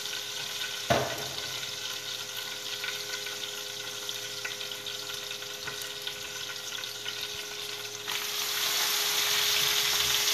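Fat sizzling in a hot frying pan on a gas burner, with one sharp knock about a second in. Near the end, leafy greens go into the hot fat and the sizzle turns suddenly louder and hissier.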